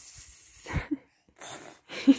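A toddler hissing like a snake, twice: two breathy "sss" sounds, the second about a second and a half in.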